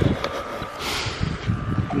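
Rubbing and rustling of a chenille microfiber wash mitt scrubbed over soapy car paint and a headlight, with uneven low rumbling on the microphone.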